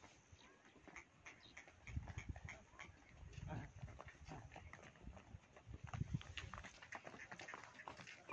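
Water buffalo herd walking on a dirt track: a scatter of soft hoof steps, with a few low thuds about two, three and a half, and six seconds in.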